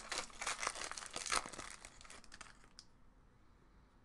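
A trading-card pack wrapper being torn open and crinkled by hand: a dense crackle in the first second and a half that thins out and stops about two and a half seconds in.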